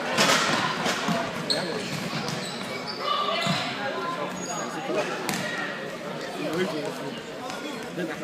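Indoor football game on a wooden sports-hall floor: sharp ball kicks and running footsteps ring out in the hall's echo, with players' voices calling.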